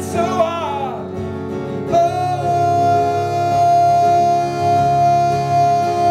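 A man singing live to his own strummed acoustic guitar, holding one long high note from about two seconds in.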